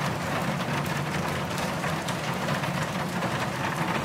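Steady rain falling on a car, an even hiss with a low steady hum beneath it.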